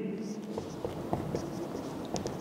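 Marker pen writing on a whiteboard: a few faint taps and scratches of the tip on the board.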